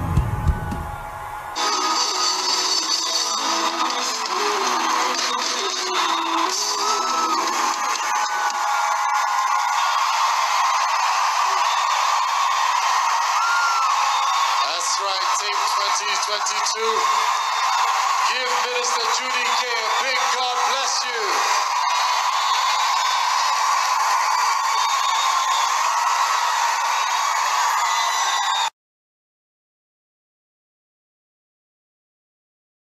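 A crowd of worshippers shouting, whooping and cheering, with some music underneath. The sound is thin and lacks bass, and it cuts off suddenly near the end.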